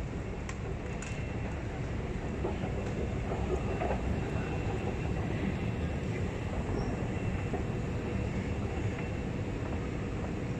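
Steady low rumble of a London Underground station heard while riding down an escalator, with a faint steady high whine over it.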